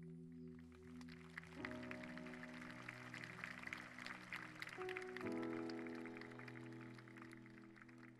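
Worship band playing soft, sustained keyboard chords during a quiet instrumental passage, the chord changing twice, with a faint hissy wash of higher noise over the middle.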